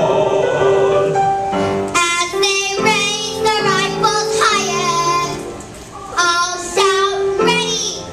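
A young girl singing over held instrumental accompaniment, her notes wavering and sliding; the music dips briefly past the middle, then she comes back in.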